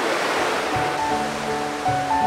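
Rushing water of a rocky stream's rapids, a steady roar of whitewater. Background music comes in about half a second in, with held notes over a low bass.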